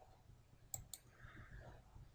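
Two quick computer mouse clicks about a fifth of a second apart, in near silence.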